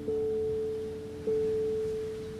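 Slow instrumental music on a plucked-string instrument: single sustained notes, one struck at the start and another about a second later, each ringing on and slowly fading.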